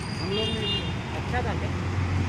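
Street traffic with a steady low engine hum, and brief snatches of voices over it.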